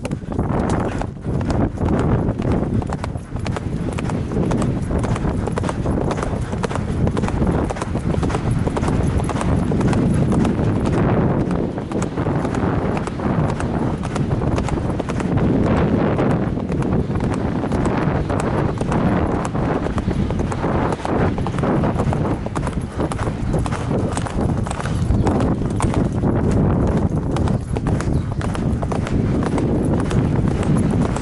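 Event horse's hoofbeats galloping on turf across a cross-country course, a fast, unbroken run of strides, heard from the rider's helmet-camera microphone.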